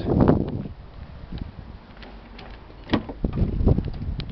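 Car door latch clicking open about three seconds in, then the door being swung open.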